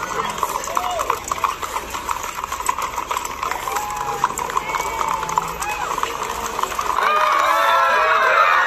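Hooves of a big herd of loose horses clip-clopping at a walk on a paved street, a rapid jumble of many hoofbeats, with crowd voices. About seven seconds in the crowd grows louder, cheering and shouting.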